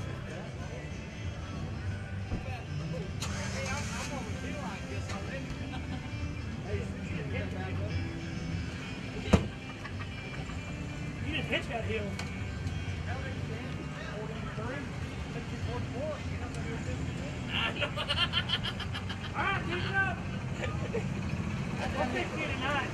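Faint, distant voices over a steady low rumble, with one sharp click about nine seconds in and louder voices about three-quarters of the way through.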